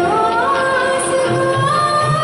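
A woman singing solo through a microphone, holding a long note that slides upward about half a second in and rises again near the end, over instrumental accompaniment.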